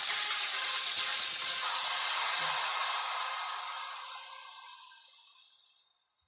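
KCSM freight train passing at close range, its wheels and rails giving a loud, steady hiss. The sound fades out over the last three seconds.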